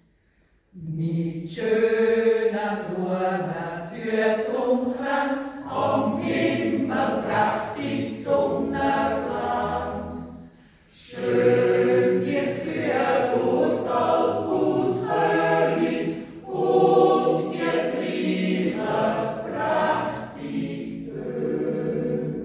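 Mixed yodel choir of men's and women's voices singing unaccompanied in parts, a traditional Swiss Jodellied. The singing starts about a second in and breaks briefly near the middle between phrases.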